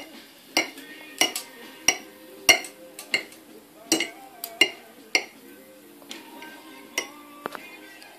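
A metal fork chopping boiled eggs in a ceramic dish: sharp clinks of the tines striking the dish about every half second, then a pause of nearly two seconds and two more clinks near the end.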